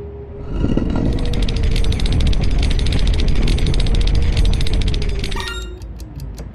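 Mechanical sound effect of the stop-motion robot rising out of the rock: a low rumble with a rapid rattle over a steady hum. It starts about half a second in and cuts off sharply near the end, giving way to quick ticking.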